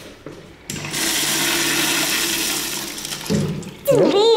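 Wall-mounted urinal flushing. A sudden rush of water starts just under a second in, runs steadily down the bowl, and eases off near the end.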